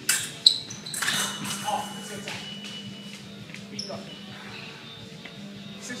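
Sabre blades clashing: a few sharp metallic hits with brief high ringing in the first half second, amid footwork on the strip. A steady low tone holds from about a second in, with scattered lighter knocks.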